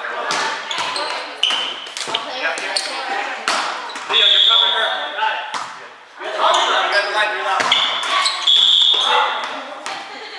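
Indoor volleyball play echoing in a gym: sharp smacks of the ball being hit and landing, players' voices calling out, and a few brief high squeaks of sneakers on the court.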